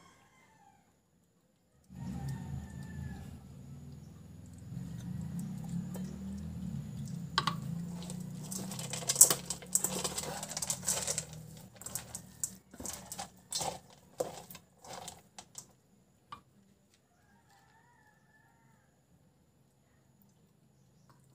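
A hand mixing rice and chopped meat in a stainless steel dog bowl: soft squishing and a run of sharp clicks against the metal, loudest about nine seconds in and dying away by sixteen seconds. A low rumble runs underneath for the first dozen seconds, and a few faint calls come near the end.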